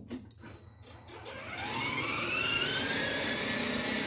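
Electric motor and gearbox of a battery-powered ride-on toy car starting up: a whine that rises in pitch as it gets going about a second in, then holds steady.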